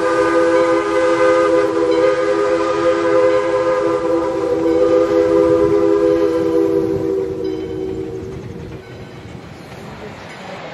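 A train horn sounds one long chord of several notes over the train's running noise, fading out about eight seconds in.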